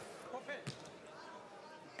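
Faint wrestling-hall ambience: a few soft thuds in the first second, with distant voices underneath.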